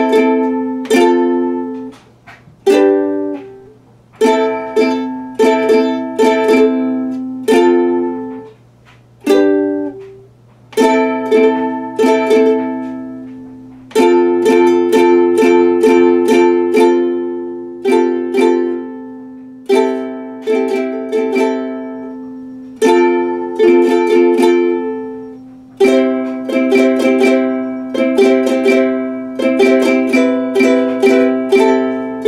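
Ukulele being strummed: chords ring out and fade, with a few short pauses between phrases. A faint steady low hum runs underneath.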